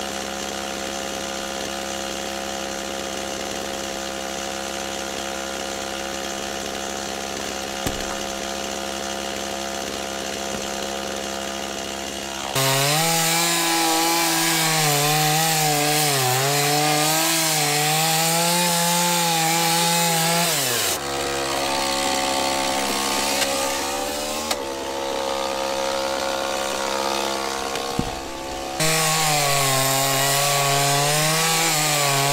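Stihl MS 260 two-stroke chainsaw, fitted with a new drive sprocket, running steadily for about twelve seconds. It then goes up to full throttle and cuts through a log, the engine pitch wavering under load. It drops back to a steady lower speed for several seconds and is cutting again near the end.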